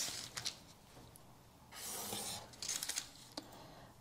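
Faint rustling of pattern paper as a clear plastic ruler is slid across it, with a few short scratchy strokes of a marker pen later on.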